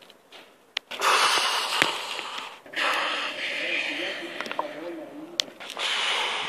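Loud hissing, crackling noise for a lightning strike, starting about a second in. It fades after a couple of seconds and swells again near the end, with a couple of sharp clicks.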